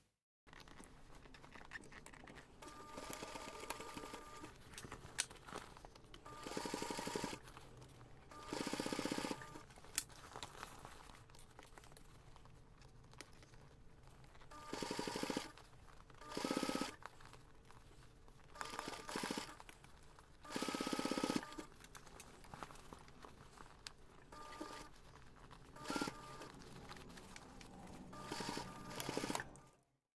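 Domestic sewing machine stitching in short runs of about a second each, roughly ten of them with pauses between. The pauses are where the work is stopped and turned while a seam is sewn around a curved panel.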